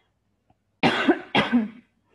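A woman coughs twice, about half a second apart.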